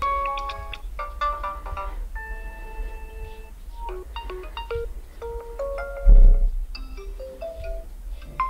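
Oppo Reno5 Z system ringtones previewing through the phone's speaker, one short melody after another, each cut off abruptly as the next tone in the list is tapped. A dull thump about six seconds in is the loudest moment.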